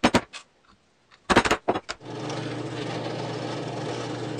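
A wooden mallet knocks sharply on a wooden block several times. About two seconds in, a drill press starts running steadily as it drills into plywood.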